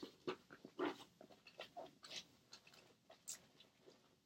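Faint, irregular rustling and crinkling of papers and packaging being sorted through by hand.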